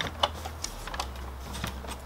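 Scattered light clicks and taps of plastic as hands handle a truck's dash bezel trim, working a piece free of its hinge, with the sharpest clicks in the first half-second.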